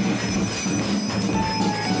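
Continuous metallic ringing of temple bells over a fast, rhythmic percussive clatter, the din of an aarti.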